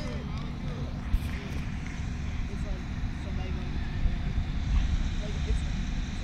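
Low rumbling wind noise on the microphone, with faint, scattered voices from players and spectators across the field.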